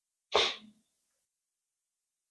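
A single short, sharp vocal burst from a man, like a forceful exhale or exclamation, about a third of a second in and lasting about half a second.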